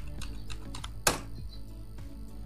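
Computer keyboard keys tapped as a password is typed, a scatter of light clicks, with one louder click about a second in.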